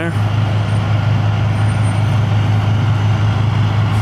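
Diesel semi truck engine idling: a loud, steady low drone that holds unchanged.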